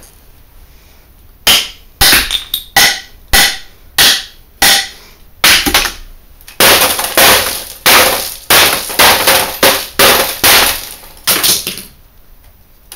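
Hammer blows on a stripped-down LCD monitor's backlight panel and metal frame: about a second and a half in, a string of sharp strikes begins, some with a brief metallic ring. They turn into a steady run of crunching hits about two a second through the second half.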